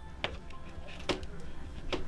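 About three light plastic clicks as a large pry tool levers the red end cap off a UE Megaboom speaker.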